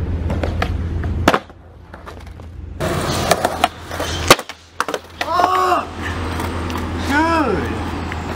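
Skateboard wheels rolling on concrete, then a sharp pop of the tail about three and a half seconds in, a brief gap while the board is in the air, and the board hitting the concrete after a flip trick down three steps. Short shouts follow near the middle and again near the end.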